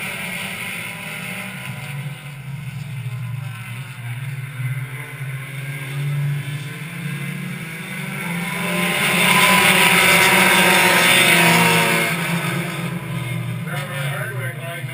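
Race cars' engines running on an oval track, a steady drone that swells to its loudest about nine to twelve seconds in as the pack passes, then fades again.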